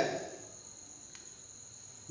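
A pause between spoken phrases: the end of a man's word fades out at the start, leaving light hiss and a faint steady high-pitched tone.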